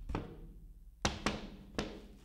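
A large tactics board being handled and set in place, knocking and bumping four times, the third and fourth close together near the end.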